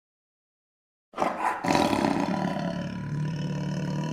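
A lion's roar played as an intro sound effect: one long, low roar starting about a second in and slowly fading.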